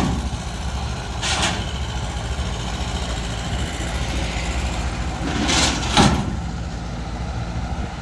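Engine idling steadily, with three short metallic clatters from the steel loading ramps being handled and lowered. The loudest clatter comes about six seconds in.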